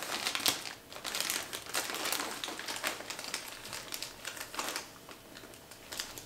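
Plastic poly mailer bag crinkling and rustling as it is handled and cut open with scissors, with scattered sharp snips and clicks. The rustling is busiest at first and quieter near the end.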